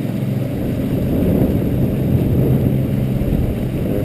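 Evinrude E-TEC 135 H.O. two-stroke outboard running steadily at speed, with the rush of the churning wake water.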